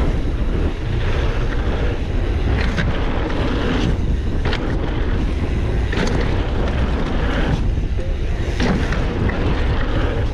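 Heavy wind buffeting the microphone as a mountain bike rolls over a dirt jump line, with the tyres running on packed dirt under it. About four short sharp knocks from the bike come through at intervals of a second or two.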